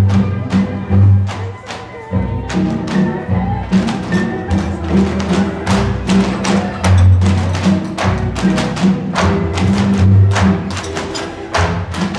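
Tinikling bamboo poles clacking together and knocking on the floor in a steady, repeated rhythm over dance music.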